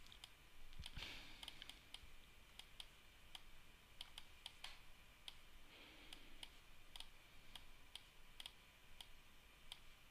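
Faint, irregular clicking of a computer mouse and keyboard, a few clicks a second, over near silence.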